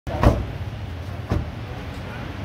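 Steady low street-traffic rumble with two thumps about a second apart, the first the louder.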